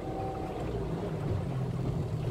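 A small car's engine running low and steady, heard from inside the cabin as the car wades through deep floodwater.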